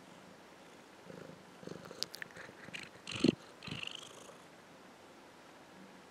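A kitten right up against the camera microphone: fur rubbing and brushing over it with soft bumps and a few sharp clicks, the loudest knock a little after three seconds in.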